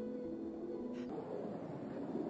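Documentary background music holding a few sustained notes, which end about a second in; a steady low rushing noise follows.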